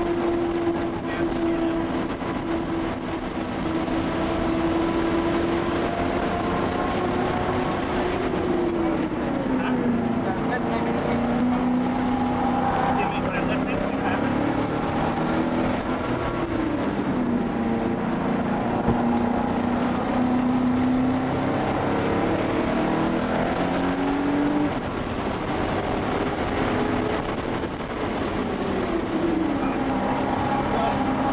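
Porsche 930 Turbo's air-cooled turbocharged flat-six running hard at track speed, heard from inside the cabin. The engine note holds steady, then falls in pitch three times, about nine seconds in, around seventeen seconds and near the end, and climbs again in between.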